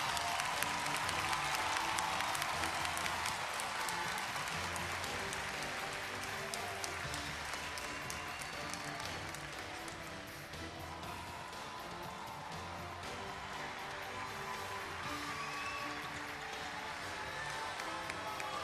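Audience applause over background music with a steady beat; the clapping thins out gradually through the first half.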